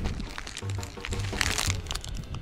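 Background music with a steady beat, with sharp crackling over it, loudest about one and a half seconds in.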